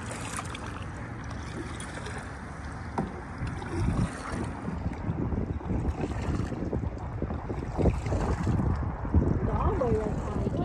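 Wind on the microphone over kayak paddles splashing and water lapping against the hull. About three seconds in, the wind turns gusty and hits the microphone in uneven low thumps.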